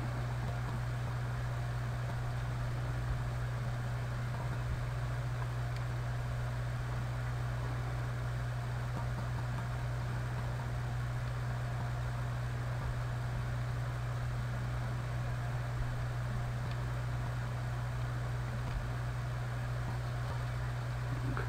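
Steady low hum with a faint hiss beneath it, unchanging throughout: background room tone with no distinct events.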